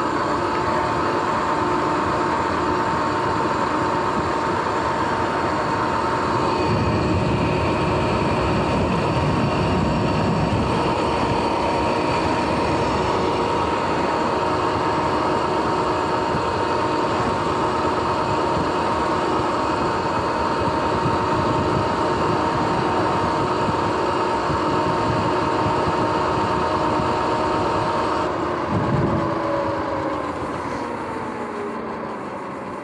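Sur-Ron X electric dirt bike cruising at speed: a steady motor and drivetrain whine over road and wind noise. The whine drops in pitch near the end as the bike slows.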